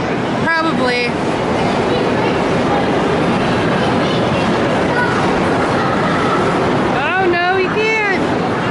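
Steady, loud game-room din: a continuous rumble and clatter of arcade and crowd noise, with voices breaking through briefly about half a second in and again near the end.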